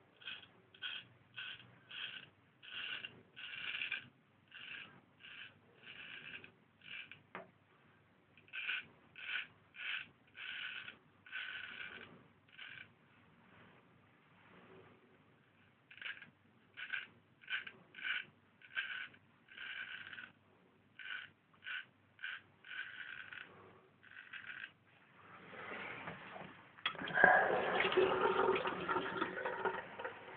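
A Marshall Wells Zenith Prince straight razor scraping through lathered stubble in short strokes, about one or two a second, with a pause of a couple of seconds in the middle. Near the end a louder, rougher noise takes over.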